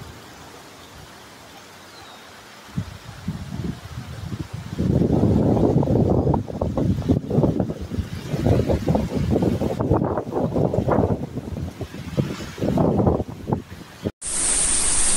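Wind buffeting a phone's microphone over the rush of floodwater in a storm. It starts as a faint hiss and becomes a loud, gusty rumble about five seconds in.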